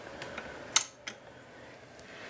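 A bench power supply's switch being pressed on: one sharp click about three-quarters of a second in, followed by a lighter click.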